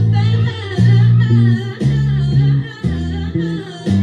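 Six-string electric bass plucked fingerstyle, playing a line of held low notes that change about every half second, over an R&B recording with singing.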